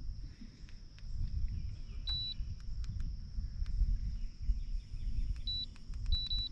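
Two short electronic beeps, one about two seconds in and one near the end, from the trolling motor's handheld remote or control unit as it is operated, with faint clicks, over a low steady rumble and a faint high hum.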